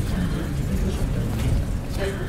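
Steady low room rumble with faint, indistinct voices murmuring over it.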